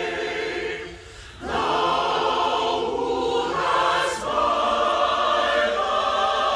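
A large choir singing a sustained chord. It dips briefly about a second in, then comes back in fuller and louder.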